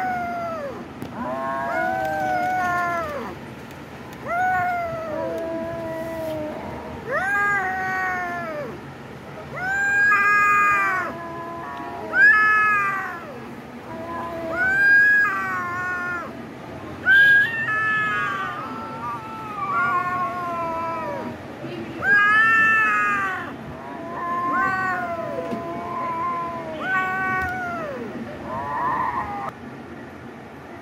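Kitten meowing over and over, a long string of calls about one every one to two seconds, each rising and then falling in pitch.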